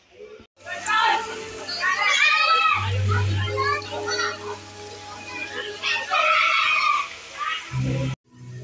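Children shouting and playing in a swimming pool, over background music with a steady bass; the noise starts abruptly about half a second in.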